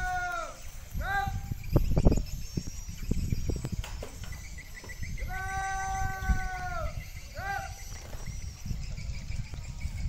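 Drill commands shouted across a parade ground, given twice about five seconds apart. Each is a long, held, flat-pitched call ending in a short, clipped word, in the 'Hormaaat… gerak!' manner of an Indonesian flag ceremony.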